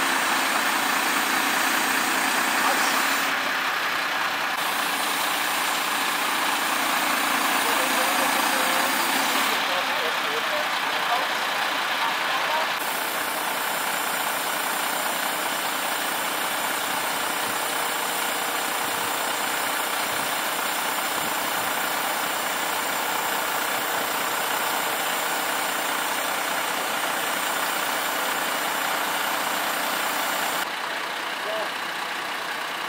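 Recovery truck's diesel engine running steadily, powering the crane as it hoists a wrecked car onto the flatbed.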